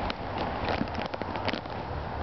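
Rain falling on an umbrella and car bodywork, a steady hiss with scattered sharp drop ticks, and a click near the start as the 2009 Subaru Forester's rear door is opened.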